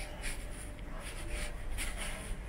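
Footsteps scuffing on carpet at a slow walking pace, over a steady low rumble.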